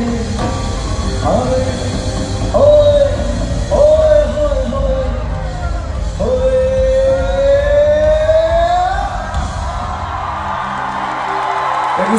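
Live band music with a male lead singer holding long sung notes, the longest one rising slowly for about three seconds; the band's low end falls away near the end as the song closes.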